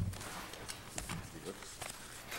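Meeting-room background: faint low voices murmuring, with a low thump at the start and scattered small clicks and knocks.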